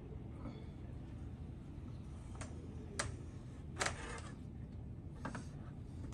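Quiet room tone with a few faint clicks between about two and three seconds in and a short scrape near four seconds: a steel taping knife and blade knife being set against vinyl wallpaper for a trim cut.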